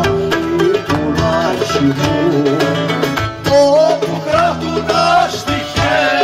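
A man singing a Greek song with acoustic guitar accompaniment, the sung line sliding and ornamented over plucked strings and steady low notes.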